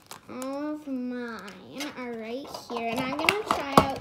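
A child's voice making drawn-out, wordless vocal sounds that slide up and down in pitch, with a sharp click a little before the end.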